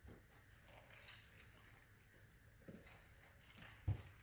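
Near silence: small-room tone with a few faint, short taps, the loudest just before the end.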